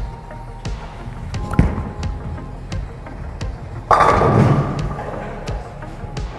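A bowling ball thudding onto the wooden lane about one and a half seconds in, then, about four seconds in, a sudden loud crash as it hits the pins, which dies away over the next second. Background music with a steady beat plays throughout.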